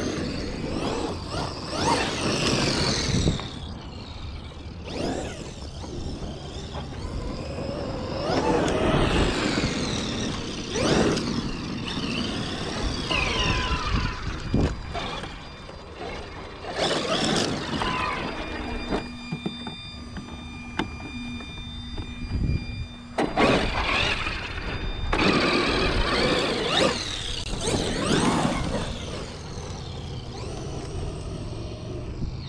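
Traxxas X-Maxx electric RC monster truck being driven hard in bursts: its motor whine rises and falls with each stab of the throttle, over rushes of noise and a few sharp knocks. Midway there is a steadier few seconds of level whine.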